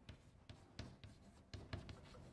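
Chalk writing on a blackboard: a series of faint, short taps and scratches as letters are stroked on.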